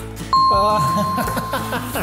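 A steady electronic beep tone, held for a little over a second, added as a sound effect over background music, with laughing voices underneath.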